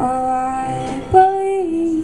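A woman singing long held notes with piano accompaniment, live. About a second in a new, louder note comes in sharply, and the pitch steps down near the end.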